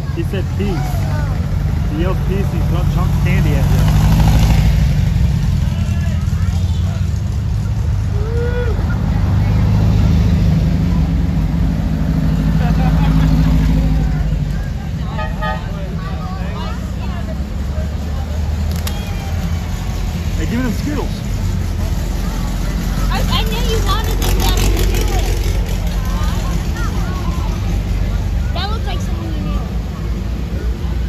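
Air-cooled Volkswagen flat-four engines of parade cars (a VW dune buggy, then a Beetle, then a VW Thing) running at low speed as they pass one after another, loudest early on and again around the middle, with people chatting nearby.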